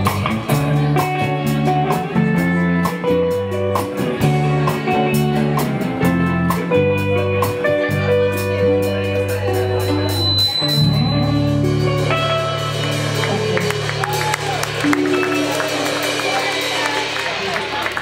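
Live rock band with electric guitars, bass and drums playing an instrumental outro over a steady drum beat. About ten seconds in, the drumming stops and the band holds long ringing chords to close the song, with clapping from the audience near the end.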